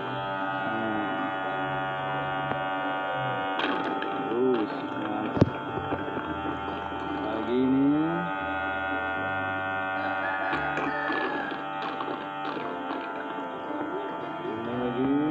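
Small battery-powered honey suction pump running with a steady electric hum as it draws stingless-bee honey up a tube. Melodic music with sliding notes plays over it, and a single sharp knock comes about five seconds in.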